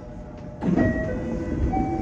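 Electric commuter train running on the track. A low rumble grows louder about half a second in, with a series of short tones that step in pitch.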